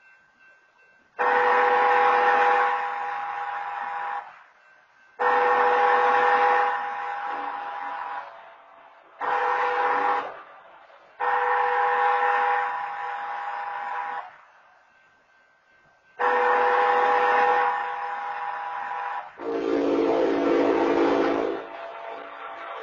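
Railroad crossing horn blasts in the long, long, short, long grade-crossing pattern, then a further long blast, all on the same steady chord. Near the end a different, lower-pitched horn chord sounds for about two and a half seconds.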